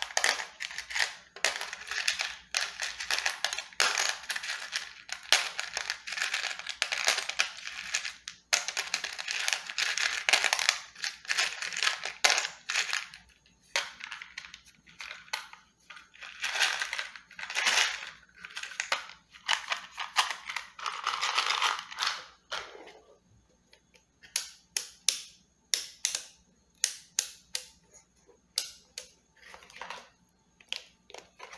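Close-up ASMR handling of a hand-held car tool: dense, irregular scratching and rubbing for about twenty seconds, then a run of sharp taps, about two a second, near the end.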